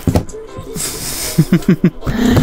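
Plastic toy figure and propeller flying machine being handled, with a few sharp clicks, then a breathy hiss about a second in and several short rising voice-like sounds near the end.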